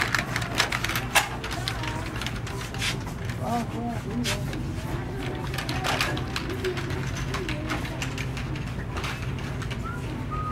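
Pull-along plastic shopping basket on small wheels rattling and clicking as it is rolled across a tiled store floor, with irregular clicks that are loudest in the first second or so. A steady low hum and faint voices sit underneath.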